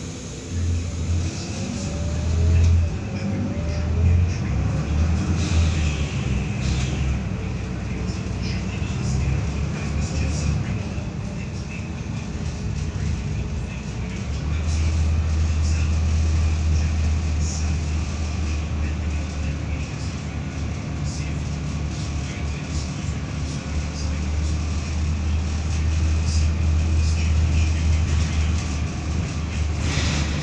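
Cabin sound aboard a Volvo B7RLE bus, its rear-mounted six-cylinder diesel running with a low drone as the bus drives. The drone comes and goes over the first few seconds, then runs steadier and louder from about halfway through as the bus pulls along.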